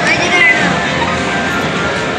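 Arcade background music and din, with a brief high squeal that rises and falls, about half a second long, near the start.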